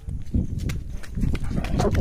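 Quick, irregular footsteps on a dirt path over a low rumble of phone-handling noise as the phone is carried on the move.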